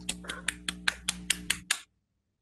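One person clapping into a video-call microphone: a quick, even run of claps, about six a second, over a faint hum. The claps stop shortly before the end.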